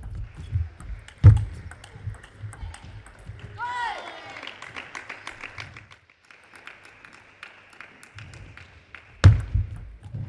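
Table tennis rally: the plastic ball clicking sharply off rackets and table, with low thuds of the players' footwork on the court floor. A short shout, falling in pitch, comes about three and a half seconds in as the point ends. A loud thud with more ball clicks comes near the end as the next rally starts.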